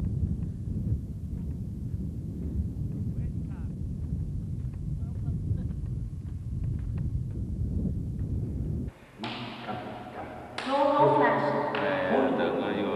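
Wind buffeting the camcorder microphone, a steady low rumble that cuts off suddenly about nine seconds in. A voice starts near the end.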